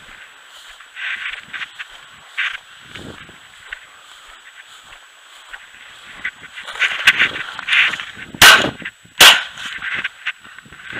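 Footsteps brushing through tall dry grass, then two shotgun shots less than a second apart near the end, fired at a flushed rooster pheasant.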